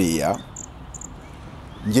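Two short, high chirps from an insect, a little under half a second apart, during a pause in a man's speech, over a faint outdoor background.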